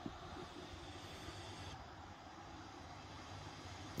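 Faint, steady background hiss of outdoor ambience, with no distinct sound standing out.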